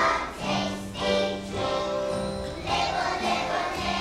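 Kindergarten children's choir singing a song with musical accompaniment.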